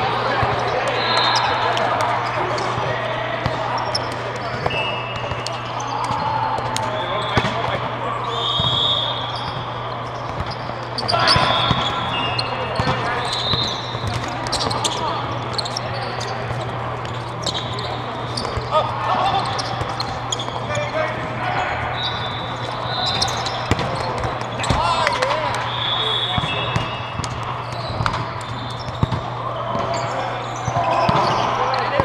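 Volleyball game ambience: several people talking at once, with short high squeaks of sneakers on the court and scattered knocks of balls, over a steady low hum.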